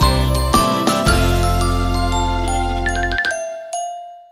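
Children's nursery-rhyme music without singing. The bass and low notes stop about three seconds in, leaving a last high note ringing out and fading.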